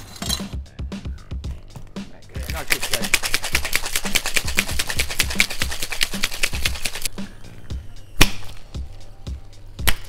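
Ice cubes rattling hard and fast inside a metal tin cocktail shaker during a shake of about four and a half seconds, then a single loud sharp knock about a second later and another near the end, over background music with a steady low beat.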